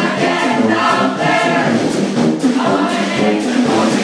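Brass band piece with a sung passage: many voices singing together over a steady beat of about two strikes a second.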